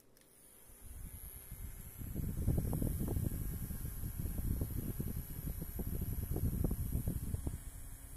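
Small battery-powered handheld misting fan clicked on and running, its motor giving a steady high whine. Its blades blow air straight onto the microphone, a gusty low rumble that builds over the first couple of seconds. Both fade near the end.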